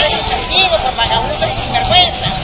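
A woman talking in Spanish close to a handheld microphone, over a steady low rumble of outdoor background noise.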